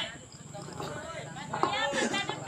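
People's voices talking over a low steady hum, quieter for a moment about half a second in, with a sharp tap near the end.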